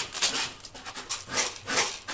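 A cat digging in a litter box with its paws, scraping the litter in a quick series of strokes, several a second.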